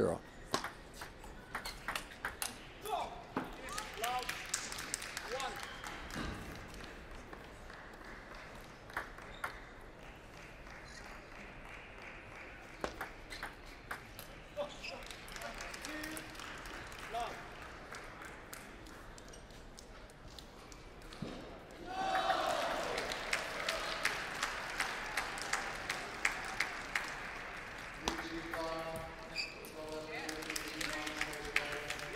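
Celluloid table tennis ball clicking off rackets and the table in quick rallies, with sharp ticks scattered all through. About 22 seconds in, a burst of applause from the spectators rises and fades over several seconds.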